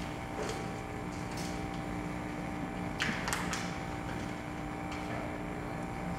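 Steady electrical hum of a microphone and PA system, with a few short knocks and rubs about three seconds in as the podium microphone on its stand is handled and adjusted.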